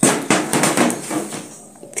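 Metal baking tray clattering and scraping as it is pulled out of the oven: a sudden run of knocks that dies away over the next second or so.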